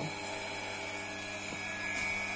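Steady hum of running machinery with a thin high whine over it, from the heated cylinder-head pressure-test stand in operation.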